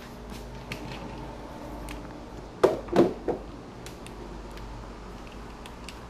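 Portafilter being fitted and twisted into the group head of a Breville Barista Express espresso machine: a few knocks and clicks, the strongest about halfway through, over a low steady hum.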